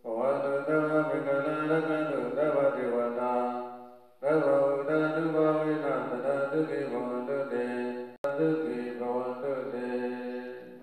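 Buddhist prayer chanting in long held, sustained phrases. The voices fade out about four seconds in, start again shortly after, and cut off briefly near eight seconds before continuing.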